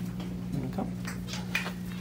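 A steady low hum with a few faint, short clicks, and a single softly spoken word about a second in.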